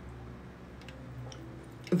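Someone sipping a drink from a ceramic cup: a few faint small clicks over quiet room tone. A woman's voice starts at the very end.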